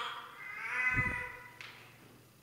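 A high-pitched, whining, meow-like cry, heard twice, the second longer and wavering. There is a soft low thump about a second in.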